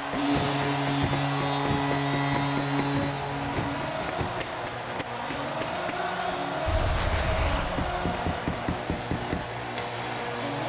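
Arena goal horn blaring over a cheering hockey crowd to mark a home-team goal; the horn cuts off about three and a half seconds in, leaving the crowd noise and arena music.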